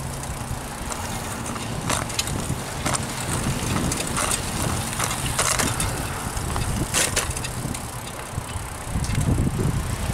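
Ride noise of a bicycle rolling along a concrete path: a steady low rumble with several short, sharp clicks or rattles scattered through.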